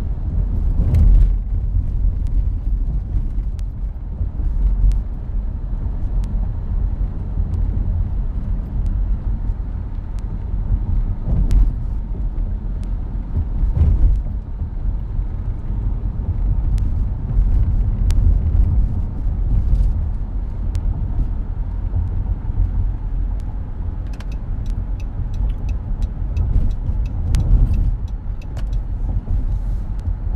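Steady low road and engine rumble heard inside a moving car. Scattered sharp clicks and knocks come through it, with a quick run of clicks near the end.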